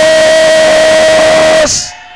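A man's voice shouting one long held note into a handheld microphone at full strength. It cuts off with a hiss about 1.8 seconds in, and the hall's echo dies away after it.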